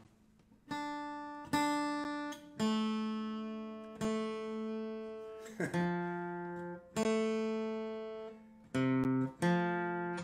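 Acoustic guitar playing a series of chords, each struck once and left to ring out before the next. There are about eight in all, with the last two coming closer together near the end.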